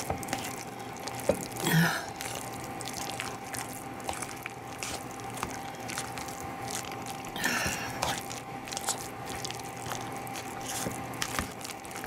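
Hand potato masher working cooked russet potatoes in a mixing bowl: soft squishing with irregular clicks and knocks of the wire masher against the bowl.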